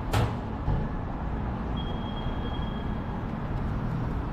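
Low, steady motor-vehicle rumble, with a short sharp hiss right at the start, a thump just under a second in, and a thin high whine for about a second in the middle.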